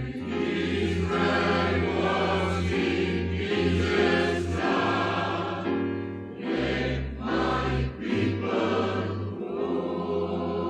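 Large mixed choir singing a spiritual, with keyboard and double bass accompaniment; a deep bass line holds long notes beneath the voices.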